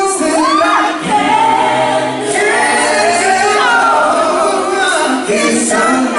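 Male singers performing live on microphones, several voices in harmony with sweeping vocal runs, in an R&B ballad style.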